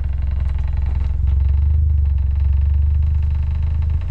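A 2019 Toyota Corolla hatchback's 2-litre four-cylinder engine runs steadily through an aftermarket quad-tip exhaust, a low, even note heard from behind the car. It gets slightly louder about a second in and holds there.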